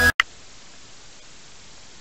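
Electronic music cuts off abruptly at the start. A steady, soft hiss follows, likely light rain falling on the river's surface.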